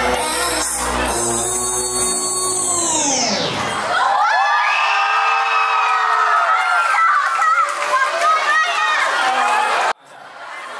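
A K-pop dance track over loudspeakers slows down with its pitch falling away and stops about four seconds in, a tape-stop ending. An audience then cheers and screams for the dancers until the sound cuts off sharply at the end.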